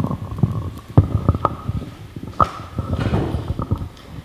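Handheld microphone being passed from hand to hand through the PA: irregular thumps, knocks and low rumbling handling noise. A faint steady ringing tone runs underneath and stops about two and a half seconds in.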